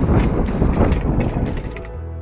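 Wind buffeting the microphone, with mechanical rattling and clicking from a Quickie Attitude hybrid handbike as it is pushed along into a strong headwind. Near the end this gives way to a steady low hum.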